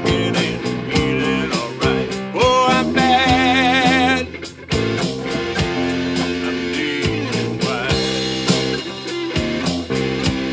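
Live blues-rock band playing an instrumental passage on electric and acoustic guitars over a steady drum beat. Between about two and a half and four seconds in, a lead guitar note is bent up and held with a wide vibrato.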